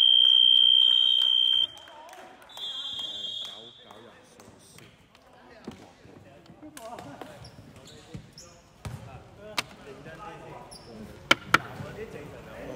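End-of-period buzzer sounding as the quarter's clock runs out: a steady high tone that cuts off suddenly under two seconds in, with a second, shorter high tone about a second later. Then faint voices echo in the hall, with a few sharp basketball bounces near the end.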